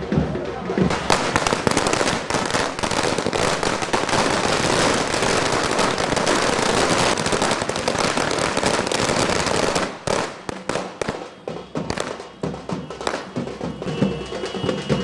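A string of firecrackers going off in a dense, rapid crackle of bangs for about nine seconds, thinning to a few separate last bangs near the end.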